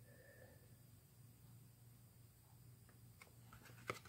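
Near silence: a low steady room hum, with a few faint clicks near the end as a trading card is handled and turned over.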